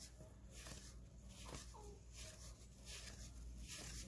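Near silence with faint rustling and light slaps of cardboard baseball cards being shuffled by hand, one card after another.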